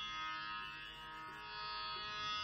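Soft, steady tanpura drone with its many unchanging overtones, sounding the sruti (tonic) of a Carnatic vocal performance before the voice comes in.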